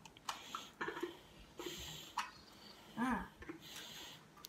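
Faint clicks and handling noise of two plastic Easter egg halves being pressed and fitted together by hand, with a short vocal sound about three seconds in.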